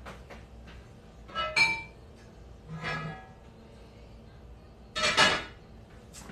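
Pots and pans clanking and clinking as cookware is taken out and handled: three separate knocks with a short metallic ring, the loudest a little before the end.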